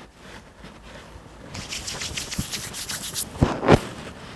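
Palms rubbing together to spread a few drops of hair oil: a soft rubbing hiss that begins about a second and a half in, with two louder strokes near the end.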